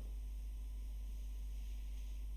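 Steady low electrical hum with a faint hiss: the background noise floor of the recording, with nothing else sounding.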